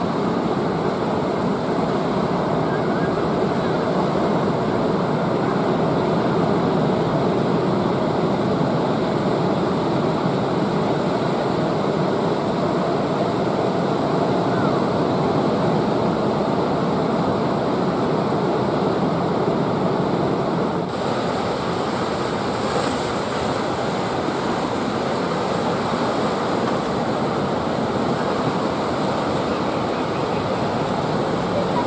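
Breaking ocean waves and whitewater washing toward the shore: a steady rush of surf, with wind on the microphone. The sound shifts abruptly about two-thirds of the way through, brightening in the upper range.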